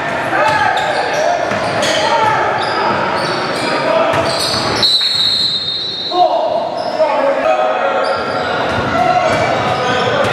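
Basketball being dribbled on a hardwood gym floor, repeated bounces, with players calling out, all echoing in a large gym. About four and a half seconds in, a referee's whistle blows for about a second and a half, and play stops for a free throw.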